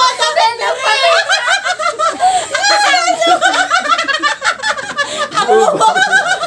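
Several people laughing hard at once, loud overlapping fits of laughter from more than one voice.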